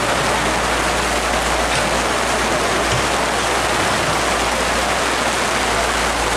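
Heavy rain falling steadily, a dense, even hiss.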